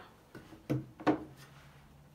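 Small wooden crates being set down and shifted on a washing machine's hard top: three short, light knocks, the last two the loudest, about a second in.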